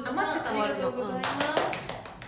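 A young woman talking, then a quick run of several hand claps in the second half.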